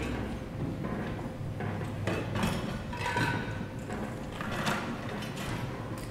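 Faint knocks and light clatter of a swing sampler and a sample bottle being handled, a few scattered knocks over a steady low hum of a large hall.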